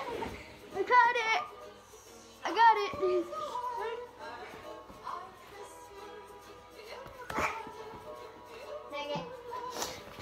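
Children's high-pitched shouts during a game of catch, two loud bursts in the first three seconds, over faint background music; a single sharp knock about seven seconds in.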